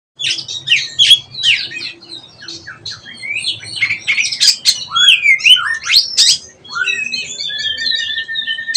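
Caged oriental magpie-robin singing: a young bird still learning its full, open song. It gives a rapid, varied run of chirps, up-and-down whistled glides and harsher notes, ending in one long steady whistle.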